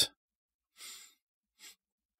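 A short, quiet sniff through the nose a little under a second in, then a brief faint breath.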